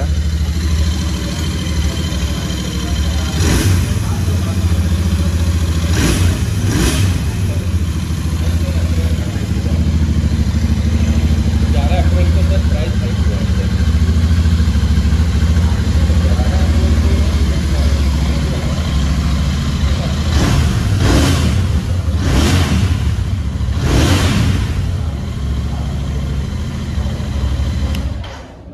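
Royal Enfield Continental GT 650's 648 cc parallel-twin engine on its stock exhaust, idling just after a cold start. It is revved about three times in the first seven seconds and four more times in quick succession about twenty seconds in. The note is whistling and very loud.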